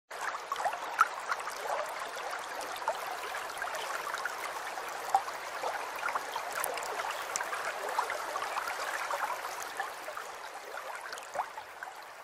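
A stream of running water trickling and gurgling steadily, with small sharp drip-like clicks scattered through it, the sharpest about a second in.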